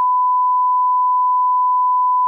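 Broadcast line-up test tone played with colour bars: a single loud, steady pure tone.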